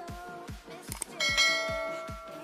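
Electronic dance music with a steady kick-drum beat. Just after a second in, a quick click is followed by a bright bell chime that rings out and slowly fades: the notification-bell sound effect of a subscribe-button animation.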